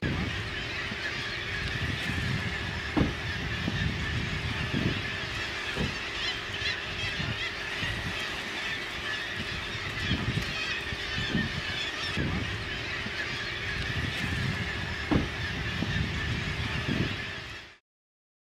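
Waterfront ambience: seabirds calling over the water, with wind buffeting the microphone in low gusts. It cuts off suddenly near the end.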